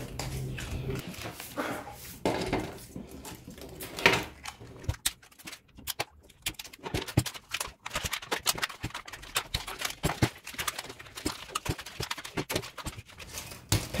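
Blue plastic shrink wrap being peeled and pulled off an electric-bicycle battery pack by gloved hands: irregular crackling and rustling of the plastic with scattered sharp clicks.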